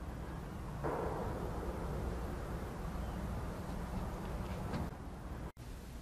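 Steady outdoor background noise, a low rumble with a soft hiss and no distinct events. It drops out briefly near the end.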